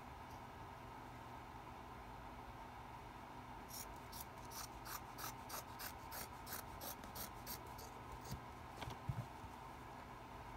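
Scissors snipping through cloth in a quick run of cuts, about three snips a second, starting about four seconds in. A light knock follows near the end.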